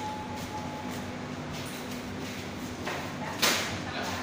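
Restaurant room noise with a faint steady hum, and a short sudden noise about three and a half seconds in.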